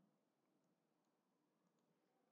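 Near silence, with a few very faint computer keyboard and mouse clicks.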